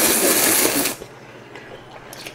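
A person slurping a mouthful of instant ramen noodles in one long, loud slurp that ends about a second in.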